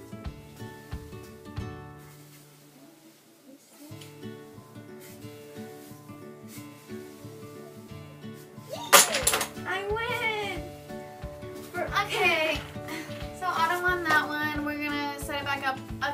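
Background music with a steady beat throughout. About nine seconds in, a sudden loud clatter as the wooden Jenga block tower collapses, followed by excited voices.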